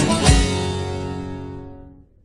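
Closing bars of a Turkish folk song (türkü) on a plucked saz, with a deep beat about every half second, the last one just after the start; the strings ring on and fade away.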